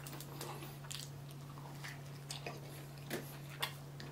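Close-miked chewing of a fast-food burger: soft wet mouth clicks and smacks, with a few sharper clicks about three seconds in, over a faint steady low hum.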